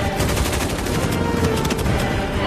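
Rapid automatic gunfire from helicopter gunships' mounted guns, a fast run of shots, with film score music underneath.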